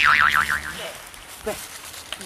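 Cartoon 'boing' sound effect: a springy tone that wobbles up and down several times in under a second, then fades.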